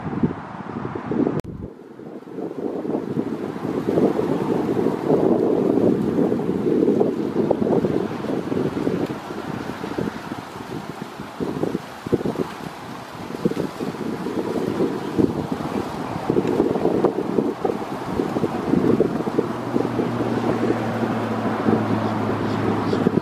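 Wind buffeting the microphone in uneven gusts, a low rumbling rush that swells and dips throughout. A low steady drone joins near the end.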